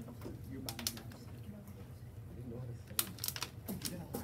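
Computer keyboard keys being tapped: a few clicks about a second in, then a quick run of clicks about three seconds in, over faint murmuring voices.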